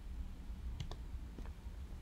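Quiet room tone with a low hum, and a few faint clicks about a second in.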